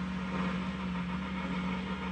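A steady low hum, even throughout, with no other sound over it.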